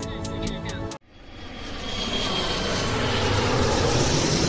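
Jet airliner flying over: engine noise swells in after a sudden cut about a second in and builds to a steady rush, with a thin whine riding on it. Music plays before the cut.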